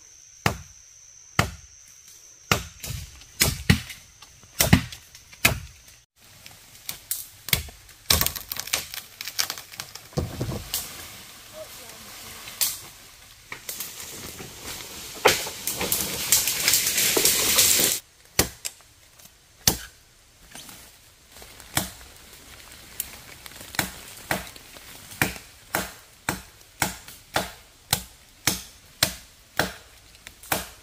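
A machete chopping into wood: a string of sharp, separate strikes. In the middle there is a long, loud stretch of rustling and crashing through leaves and branches, which stops abruptly. Then steady chopping resumes, roughly one stroke a second.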